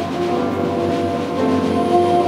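Live jazz quintet holding sustained chords, with bowed cello and double bass and alto saxophone; the harmony shifts about one and a half seconds in.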